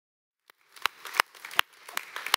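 A series of sharp knocks, about three a second, over a faint noisy background, starting about half a second in after a moment of silence.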